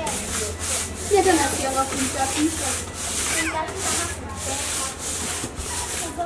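Long-handled brooms sweeping a paved path, a steady run of scratchy strokes about two a second.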